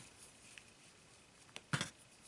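Quiet handling of embroidery-thread bracelet strings as they are pulled through a knot by hand, with a small click at the start and one short rustle near the end.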